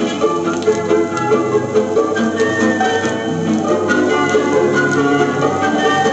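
Music from a Soviet estrada (variety) concert long-playing record of the late 1950s to early 1960s, played on a portable suitcase record player, with long held notes.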